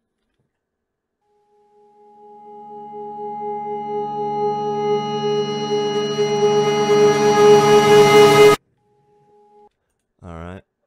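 A reverse tonal sound-design effect pitched on G#: a ringing tone with many overtones swells up out of silence over about seven seconds, growing steadily louder and brighter, then cuts off abruptly at its loudest, as a reversed sample does. A faint short tone follows just after the cut.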